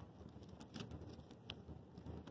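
Dry, brittle dead leaves on a fallen branch crackling faintly as a hand rubs and pulls at them, with a few small sharp ticks, the sharpest about one and a half seconds in.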